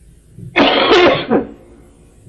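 A person clearing their throat with a rough cough, once, about half a second in and lasting just under a second.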